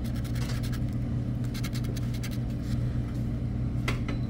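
Scratch-off lottery ticket being scraped with a hand-held pen-like tool: a quick run of short, repeated scratching strokes as the coating comes off the number spots, over a steady low hum.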